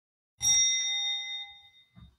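A single bell-like chime, struck once and ringing with several clear tones that fade out over about a second and a half.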